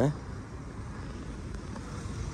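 Steady low rumble of outdoor street background noise, such as distant traffic, with no distinct events.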